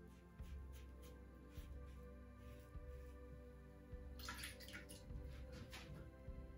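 Quiet background music with soft sustained tones. About four seconds in, a short run of scratchy rasping from a Fatip Lo Storto open-comb slant safety razor cutting stubble on the neck, with one more brief stroke near the end.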